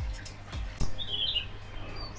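A small bird gives a short, high, twittering chirp about a second in, with another brief high chirp near the end. A single knock comes just before the first chirp.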